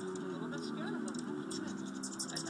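Hummingbirds at a feeder, their wings buzzing and a run of quick, high ticking notes in the second half, over background talking.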